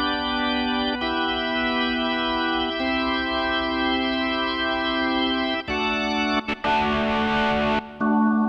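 Organ voice of a Yamaha Genos arranger keyboard sounding one held chord, its tone changing three times as different organ voices are selected. Near the end a hissy, breathy noise joins for about a second.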